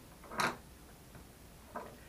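A short clack of things being handled on a countertop, about half a second in, with a fainter tick near the end; otherwise quiet room tone.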